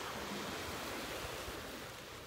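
A steady, even wash of noise like distant ocean surf, unchanging throughout.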